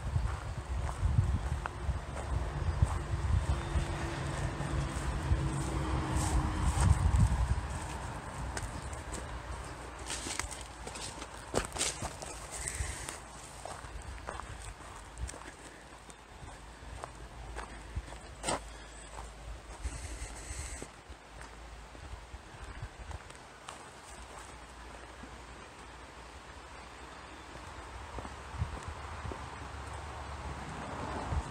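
Footsteps of a person walking through dry grass and along a dirt and gravel road shoulder, with scattered sharper clicks of steps on stones. A low rumble sits on the microphone for the first seven seconds or so.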